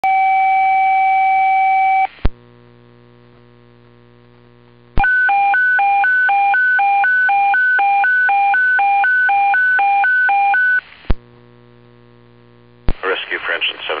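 Fire station alerting tones received over a dispatch radio, calling out a fire station. A steady tone lasts about two seconds; after a short pause comes a high-low warble, alternating about two and a half times a second for nearly six seconds. A dispatcher's voice starts near the end.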